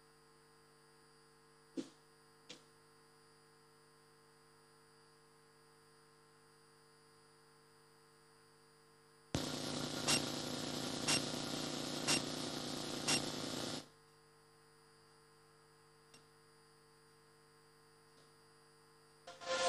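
Dead air on the event's sound feed: a faint, steady mains hum with two small clicks about two seconds in. From about nine to fourteen seconds a louder burst of hiss, with a tick roughly once a second, starts and cuts off suddenly.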